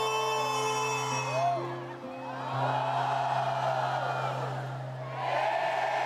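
Live boi-bumbá show music with long held notes under a crowd whooping and cheering; the cheering swells about halfway through and again near the end.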